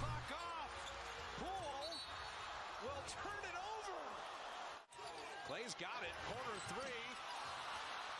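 Quiet basketball game broadcast audio: a ball bouncing on a hardwood court, many short sneaker squeaks and a steady arena crowd murmur.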